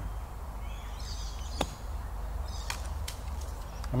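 A golf club striking bunker sand in a single sharp thud about one and a half seconds in: a bunker shot played with a shallow cut through the sand.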